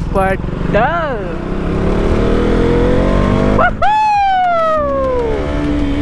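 KTM RC 200's single-cylinder engine pulling hard as the bike gathers speed, its pitch climbing steadily for about three seconds. A brief break comes just before four seconds in, then a sharper tone falls in pitch over about a second and a half.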